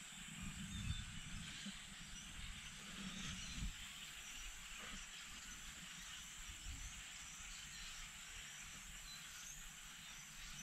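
Faint outdoor river ambience: a steady hiss with a thin, high-pitched whine, broken by a few soft low bumps, the loudest about a second in and again around three and a half seconds in.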